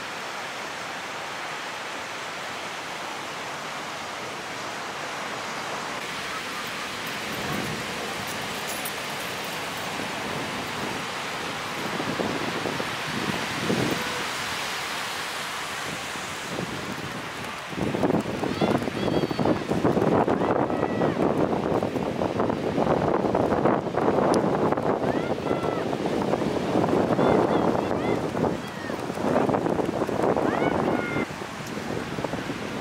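Ocean surf breaking on a beach, a steady rush of whitewater that grows louder and rougher about eighteen seconds in as waves break close to the shore.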